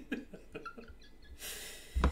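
A man's laughter trailing off into quiet breathing, with a breathy exhale near the end followed by a low thump.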